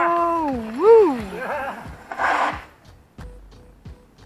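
A person's long drawn-out "whoa" shout, held on one pitch and then swooping up and down before trailing off. About two seconds in comes a short rushing hiss, with faint regular ticks underneath.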